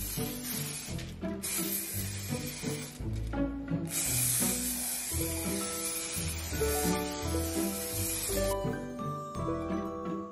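Aerosol fixative spray hissing in several bursts over a charcoal drawing, stopping about eight and a half seconds in, under background music.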